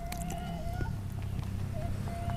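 Chewing and small wet mouth clicks of people eating spicy chicken heads by hand, over a steady low hum and a faint thin high whine that fades out about a second in.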